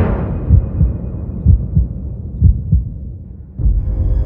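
Heartbeat sound effect: three slow double beats, each about a second apart, over the fading tail of the film score. Near the end, a sudden low hit starts the next music cue.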